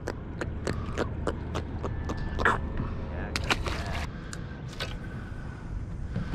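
Irregular sharp clicks and taps, about two or three a second, from fishing tackle being handled on a boat, over a low steady rumble.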